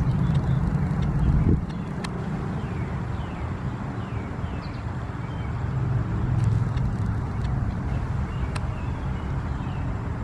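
Steady low rumble of road traffic, swelling as a vehicle passes about six seconds in.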